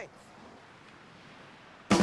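Faint, even hiss of background noise with nothing distinct in it, then a soundtrack of music with drums cuts in abruptly near the end.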